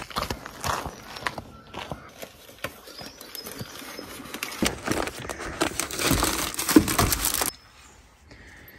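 Footsteps through long dry grass with the crinkling of cellophane bouquet wraps on carried buckets. The irregular rustles and clicks grow louder in the second half and cut off abruptly near the end.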